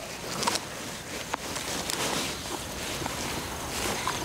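Crunchy biting and chewing of a fresh, crisp jujube, with a few sharp cracks in the first second and a half.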